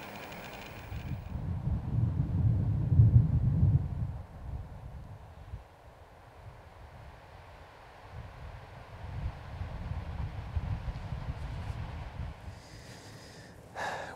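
Wind buffeting the microphone: a gusty low rumble, strongest about two to four seconds in, easing off, then rising again in the second half.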